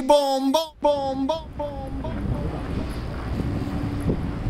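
The music ends on a pitched note that echoes away in about four fading repeats, each a little lower, over the first second and a half. Then wind blows on the microphone over the low rumble of a car ferry.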